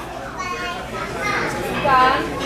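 Background voices in a busy store: a child's high-pitched voice calling and chattering, with other people talking.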